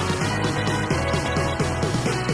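Background music with a steady, driving beat, rock-style with guitar.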